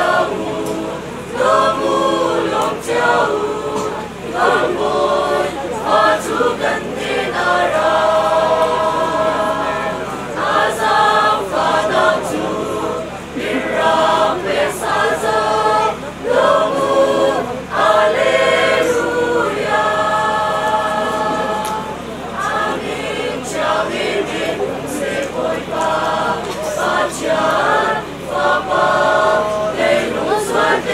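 Mixed choir of young men and women singing a sacred song together, in sung phrases of a few seconds with brief breaks between.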